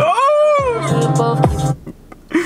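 R&B/hip-hop song playing: a female singer holds one note that rises and falls, over a beat with a bass line and drums. The music cuts off suddenly near the end.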